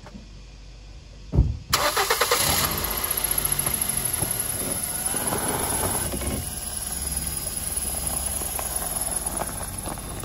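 A thump, then a Ford car's engine is cranked and catches about two seconds in, and keeps running steadily to the end with a high whine.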